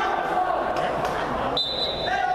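Players' voices and shouts echoing around an indoor sports hall during a 7-a-side football match, with the thuds of the ball being kicked. Near the end comes a short, steady, high whistle blast.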